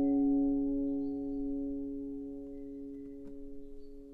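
An acoustic guitar chord left ringing after a single strum, its held notes slowly fading away.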